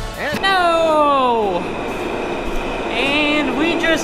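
Subway train on an underground platform, with a smooth whine about half a second in that falls steadily in pitch for about a second, typical of the electric motors winding down, over the train's steady noise.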